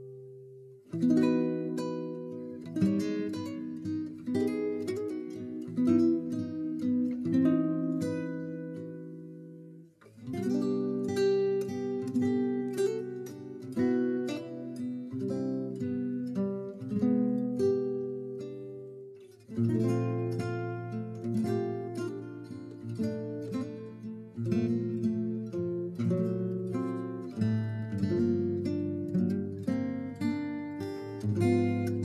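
Background music: acoustic guitar playing plucked notes and strums, breaking off briefly about a second in, at about ten seconds and again near twenty seconds.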